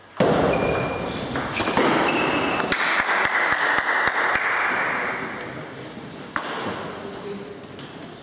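Table tennis match: a sharp, loud hit about a quarter second in, then a few seconds of clapping and cheering that fade away, with a run of short knocks about three a second in the middle. Another sharp hit comes a little after six seconds.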